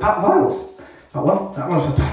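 A man's voice in two short phrases with gliding pitch.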